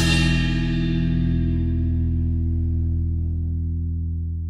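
Music: a held guitar chord with effects ringing out, its upper notes dying away as it slowly fades.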